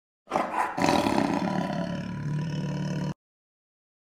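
A lion's roar, almost three seconds long, starting with a couple of short rough pulses and then held, cut off abruptly.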